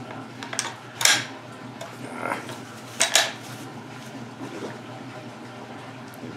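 Metal clicks and clinks from the internal parts of a Norinco T97 Gen III bullpup rifle being handled while it is field-stripped: a few sharp, separate clicks, the loudest about one second and three seconds in, over a faint steady low hum.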